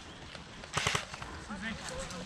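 A brief cluster of sharp clicks or knocks about a second in, followed by faint distant voices.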